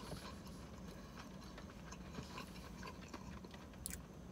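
Faint chewing, with small scattered mouth clicks and one sharp click near the end.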